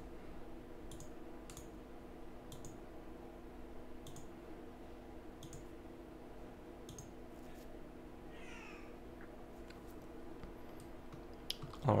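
Faint computer mouse clicks, about ten short single clicks at irregular intervals, over a steady low background hum.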